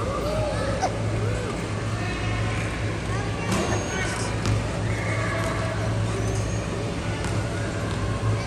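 Indistinct voices with a few gliding high calls, over a steady low hum.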